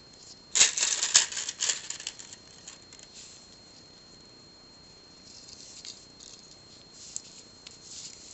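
Pearl beads clicking and rattling against each other as they are picked up and handled for threading onto thin wire. A dense run of clicks about half a second to two seconds in, then only a few faint clicks.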